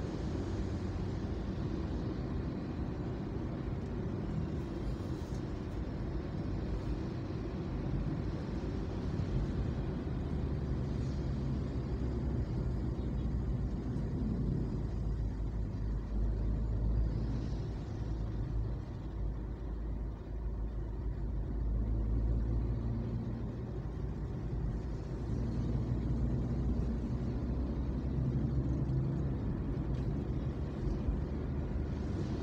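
Low, steady rumble of a car's engine and tyres on the road while driving, heard from inside the car, swelling a little now and then.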